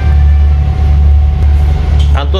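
Steady low drone of a ferry's engines heard from inside the passenger saloon, with a faint steady whine above it.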